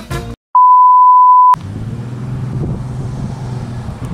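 Brass swing music stops abruptly. After a brief silence comes a loud, steady one-second beep at a single pitch, like a test tone, which cuts off sharply. Outdoor ambience follows, with wind on the microphone and a low, steady rumble.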